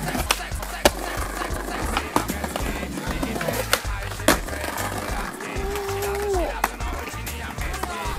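Skateboard tricks on a concrete ledge and brick paving: wheels rolling, with sharp clacks of the deck popping and landing several times. Background music plays throughout.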